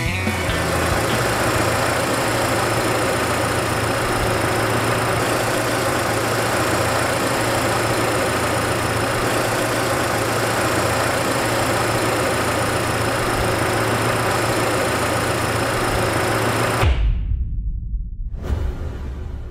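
Renault Kangoo Express four-cylinder petrol engine idling steadily with a constant hum, heard close up at the open engine bay. It cuts off shortly before the end, leaving a brief low rumble.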